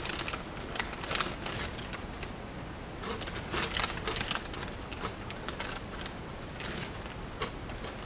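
Plastic snack bag of pork rinds crinkling as a hand rummages in it, with crunching of the rinds, in scattered short crackles.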